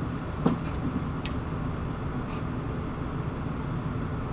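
A wooden chair set down upright on a concrete floor: one sharp knock about half a second in, with a couple of fainter knocks after it, over a steady low hum of room noise.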